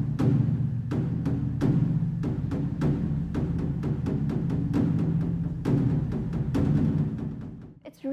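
A large Chinese temple drum (dagu) struck with two wooden sticks: a run of strokes, two or three a second, with the drum's deep ring carrying on between them. The beating fades away near the end.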